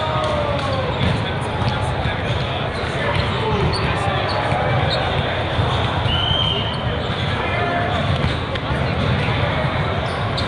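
Reverberant din of a large hall full of indoor volleyball games: many voices mixed with the repeated smacks of volleyballs being hit and bouncing on the courts.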